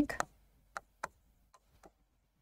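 A few faint, sharp clicks of a stylus tapping on an interactive whiteboard screen during handwriting.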